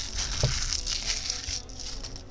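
Hands handling a cardboard gift box on a rubber work mat: light rustling that fades out late on, with a soft knock about half a second in.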